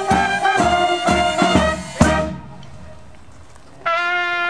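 Brass band of sousaphone, trumpets, saxophones and bass drum playing, with the drum beating about twice a second. The piece ends on a final beat about two seconds in. After a short lull a trumpet begins a long held note just before the end.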